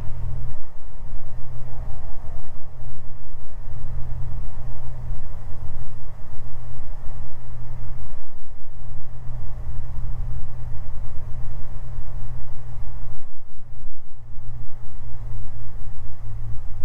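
Steady low drone of a Beechcraft G58 Baron's twin six-cylinder piston engines and propellers, heard inside the cockpit under approach power on short final.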